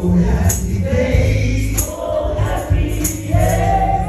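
Gospel song: a man singing through a microphone and PA over keyboard accompaniment, with a tambourine-like strike falling about every 1.3 seconds.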